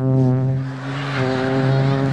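A man's voice doing a lightsaber sound effect into a microphone: a low, steady droning hum, held on one pitch, that eases briefly about a second in and then carries on.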